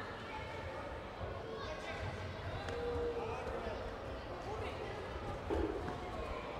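Indistinct chatter of many people in a large sports hall, with a single thud about five and a half seconds in.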